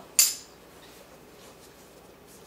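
A metal toe tap, just taken off a tap shoe, set down with a single sharp metallic clink near the start and a brief ring.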